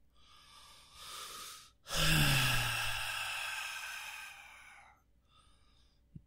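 A man breathes in, then lets out a long, breathy sigh with a low voiced hum that falls slightly in pitch and fades over about three seconds, close to the microphone.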